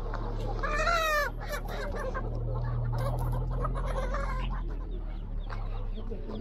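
Caged chickens calling, with one loud squawk about a second in and softer clucking after.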